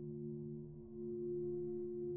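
Low ambient music drone: a few steady held tones, dipping briefly just before a second in and then swelling slightly.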